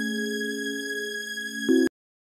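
A sustained synthesized tone, several steady pitches held together and slowly fading, that shifts briefly near the end and then cuts off abruptly.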